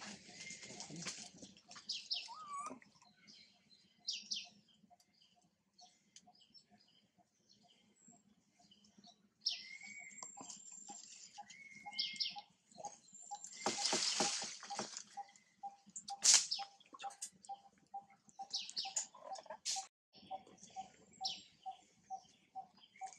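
Birds chirping in the surrounding trees, with one short note repeated about two to three times a second through the second half.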